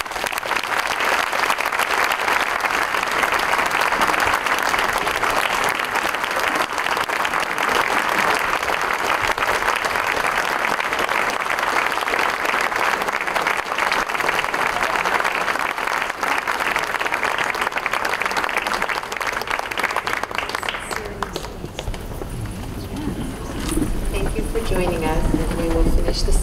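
A large crowd applauding steadily for about twenty seconds, after which the clapping dies away. Near the end a wavering pitched sound, like a voice or music, begins.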